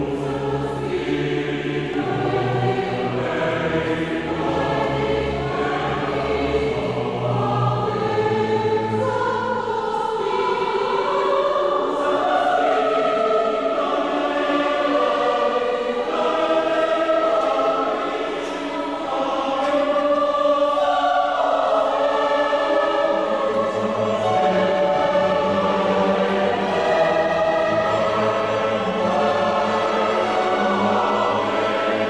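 Choir singing a sacred piece with orchestral accompaniment. The deepest low notes drop out about eight seconds in and come back about three quarters of the way through.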